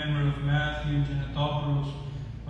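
A man's voice chanting an Orthodox (Byzantine) hymn in long, steady held notes with short breaks between phrases.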